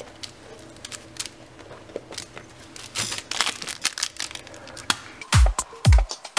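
Baby toys being rummaged by hand in a wicker basket: soft rustling and crinkling with scattered light clicks. About five seconds in, a dance-music beat with heavy kick drums starts.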